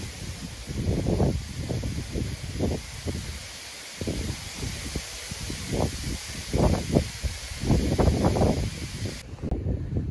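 Strong, gusty wind blowing through a reed bed: a steady rustling hiss from the stems, with irregular low gusts buffeting the microphone. The hiss cuts off shortly before the end.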